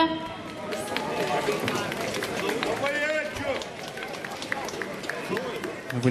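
Audience clapping after a song ends, a dense patter of claps with voices calling out among them.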